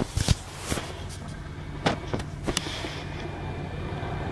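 Steady low hum of a car heard from inside the cabin, with several sharp clicks and knocks, the loudest just after the start.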